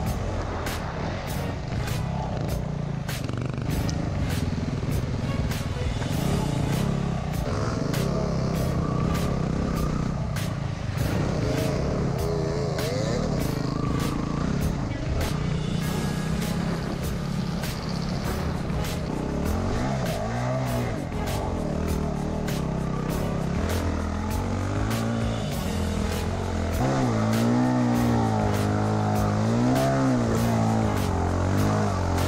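Enduro dirt bike engine running as it is ridden over a rough trail, its note rising and falling repeatedly with the throttle, over frequent knocks from the bumps and a low rumble of wind on the camera.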